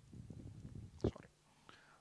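A low, muffled rumbling noise for about the first second, then a man saying a quiet, half-whispered "sorry".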